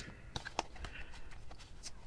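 Faint, scattered soft clicks and taps of a tarot deck being handled in the hands, its cards gathered and squared.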